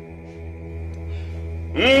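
A steady, low droning background music bed of sustained tones. Near the end a man's voice comes in loud, holding a long, wavering word.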